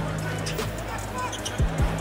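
A basketball bouncing on a hardwood court during live play, with arena crowd noise and music underneath.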